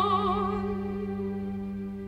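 Soprano voice holding a note with vibrato that ends about half a second in, over a sustained orchestral chord that then slowly fades.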